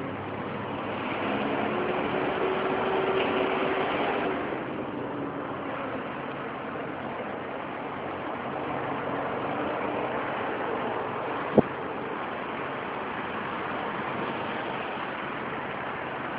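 Steady downtown street background noise with traffic, swelling for a few seconds about a second in as a vehicle passes, with a single sharp click about three-quarters of the way through.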